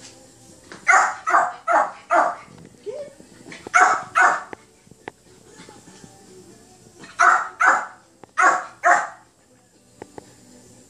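Yorkshire terrier barking in short sharp barks. Four come quickly about a second in, a pair near four seconds, and two more pairs near the end.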